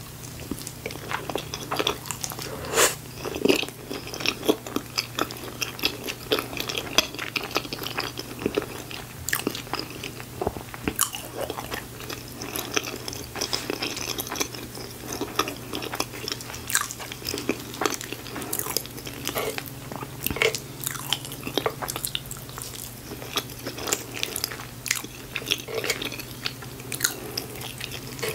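Close-miked chewing of chili cheese fries, a soft mouthful of fries, chili and melted cheddar, heard as dense, irregular sharp clicks and crunches from the mouth.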